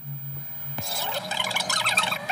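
Opening of a film trailer's soundtrack: a low hum, then from about a second in a jumbled, noisy sound with scattered short tones that grows louder.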